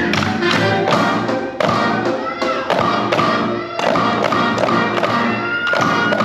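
Recorded music with a steady beat, with several drumsticks tapping on rubber practice pads in time with it.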